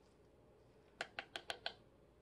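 Five quick, sharp taps in under a second, about a second in: a paintbrush tapped against the rim of a plastic measuring cup.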